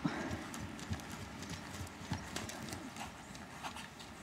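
Ridden horse's hoofbeats on a sand arena, a loose run of irregular soft knocks.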